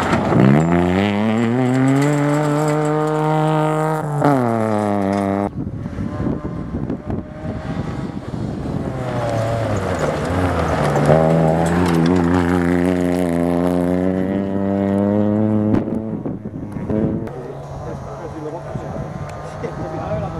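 Small rally car engines revving hard as cars pass one after another on a gravel stage. The first holds high revs, surges higher about four seconds in and then cuts off sharply. A second engine climbs in pitch from about eight seconds in, over the hiss of tyres on loose gravel.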